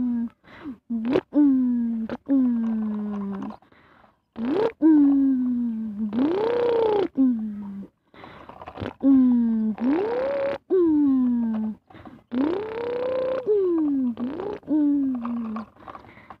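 A person making truck-engine noises with the voice while pushing a toy bulldozer: a string of drawn-out 'brrm' sounds that mostly sag in pitch, with short breaks between them. A few of them rise and fall like revving, around the middle and again later on.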